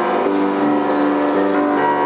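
Yamaha grand piano playing an instrumental passage of sustained chords, with new notes struck about a quarter second in and again near the end.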